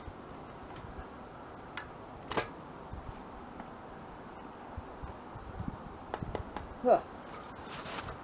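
Scattered faint clicks and knocks of a 12-gauge shotgun being handled at the bench while the shooter struggles with a fired case stuck in the chamber, with a short grunt-like vocal sound near the end.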